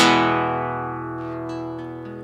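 Acoustic guitar: a full chord strummed once at the start, then left to ring out and slowly fade, with a few faint light plucks midway.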